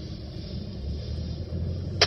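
Car cabin noise while driving: a steady low rumble of engine and tyres that grows a little stronger in the second half.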